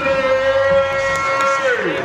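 An MC's voice over the PA holding one long shouted vowel at a steady pitch for about a second and a half, then sliding down in pitch near the end.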